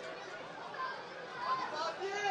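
Faint, distant voices calling and chatting across a football ground over a steady background hiss, with a couple of slightly louder calls in the second half.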